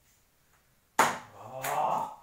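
A man's sudden loud exclamation about halfway through, reacting to a beer pong throw. There is a sharp slap-like smack partway into it.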